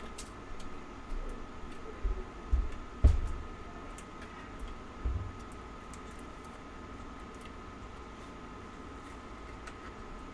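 Trading cards and card packs being handled on a table: a few soft thumps and light clicks, the loudest about three seconds in, over a faint steady high-pitched hum.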